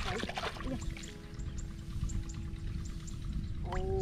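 Background music of held, steady chords with a light regular tick, and a falling melodic glide near the end, over a constant low rumble.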